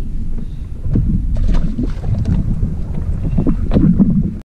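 Wind rumbling on the microphone aboard a small open boat, with a run of short, sharp knocks starting about a second and a half in.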